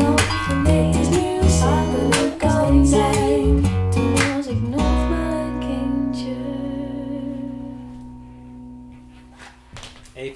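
Dutch-language pop song with guitar, bass and female vocals, played back through a pair of home-built mini monitor loudspeakers with Dayton DSA135 aluminium-cone woofers. The song reaches its end about five seconds in, on a held final chord that slowly fades away.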